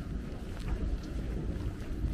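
Steady low rumble of wind buffeting a handheld phone's microphone outdoors.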